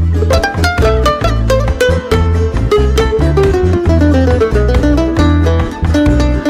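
Son jarocho string band playing an instrumental passage: jaranas strummed in a fast, driving rhythm over a repeating plucked bass figure, with a plucked lead melody that steps steadily downward and settles on a lower note near the end.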